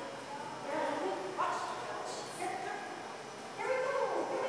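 A dog barking and yipping, with people talking in the background.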